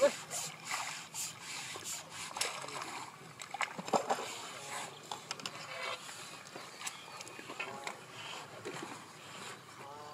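Water splashing and sloshing as a fish is netted in a landing net and lifted out of the water, with scattered sharp splashes and clicks. Faint voices are heard in the background.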